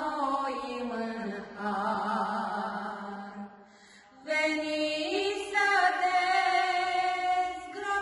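Two women singing a slow Romanian hymn together without accompaniment. They break off briefly a little past halfway, then come back in louder on long held notes.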